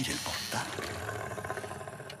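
Film dialogue: a voice speaking Spanish briefly, then a quieter, steady background for the rest.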